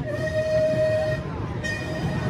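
Roller coaster train running along its track with a steady low rumble, while a flat, high whistle-like tone is held for about a second and sounds again briefly near the end.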